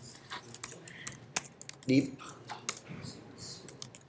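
Typing on a computer keyboard: irregular, quick key clicks while code is being entered.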